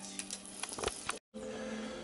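Faint steady hum with a few light clicks, broken by a moment of total silence at a cut about halfway through, after which a hum with a slightly different pitch carries on.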